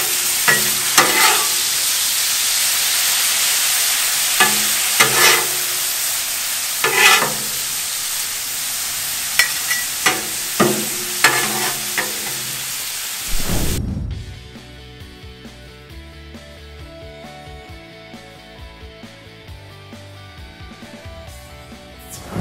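Shaved steak and onions sizzling in seasoned water on a Blackstone flat-top griddle, with two metal spatulas scraping and clacking on the griddle at irregular moments. About 14 seconds in, the sizzling cuts off and quieter background music takes over.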